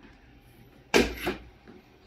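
Xiaomi CyberDog 2 robot dog shifting its legs on a tiled floor: a sudden scuffing thump about a second in that fades over half a second, and a shorter one at the very end.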